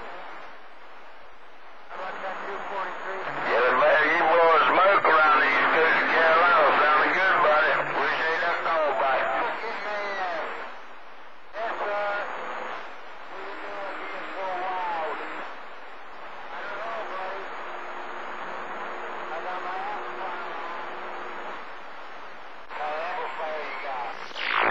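CB radio receiving distant skip on channel 28: garbled, unintelligible voices through band noise and hiss, loudest in the first half, with a steady low tone under the noise later on.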